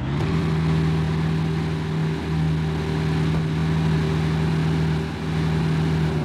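Aston Martin sports car's engine idling steadily with the driver's door open, a constant low drone.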